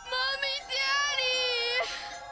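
A young girl's high-pitched cartoon voice calling out: a short call, then a long, drawn-out, wavering one.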